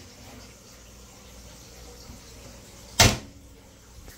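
A reptile enclosure being shut: one sharp, loud knock about three seconds in, over faint low room noise.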